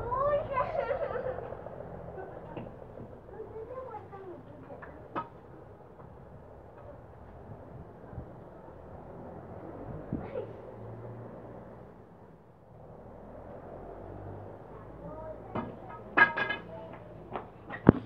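Children's voices chattering, loudest in the first second and then faint and scattered, with a few sharp knocks. Near the end come a quick cluster of clicks and bumps from the phone being handled.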